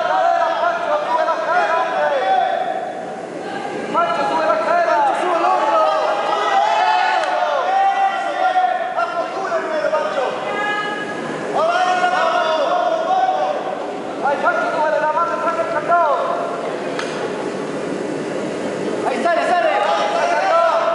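Raised voices shouting and calling out, overlapping and echoing in a large gym hall, with a short lull about three seconds in.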